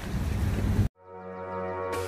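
Wind rumbling on the microphone, cut off abruptly a little under a second in. Background music then fades in with steady held notes.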